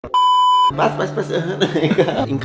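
A steady, high-pitched electronic test-tone beep, the kind played with TV colour bars, lasting about half a second and cutting off abruptly; voices talking follow.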